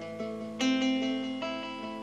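Nylon-string classical guitar playing alone in A minor, three chord attacks about a second apart, each left to ring.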